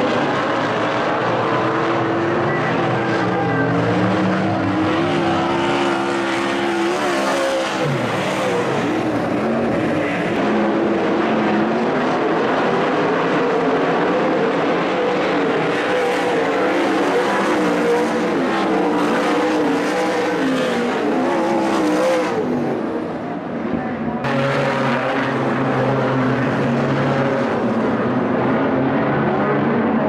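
Speedway race cars racing on a dirt oval, several engines at once, their pitch rising and falling as they rev through the turns and pass. The sound changes abruptly a few times as one clip gives way to another.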